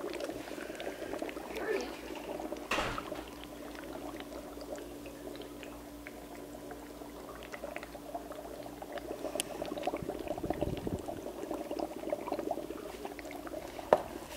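Dry ice bubbling in a cup of hot water: a steady gurgling bubble with many small pops as the frozen carbon dioxide boils off into fog. There is one knock about three seconds in.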